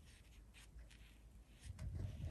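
Very faint rubbing of a soft brush over paper as colour is faded out with a clean brush. A low rumble starts near the end.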